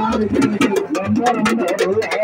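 Many voices chanting zikr, a Sufi devotional chant, together in wavering, drawn-out lines over a fast, even beat of sharp strikes, about five a second.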